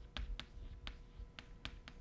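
Chalk striking a blackboard while figures are written: a series of faint, sharp clicks, about six in two seconds.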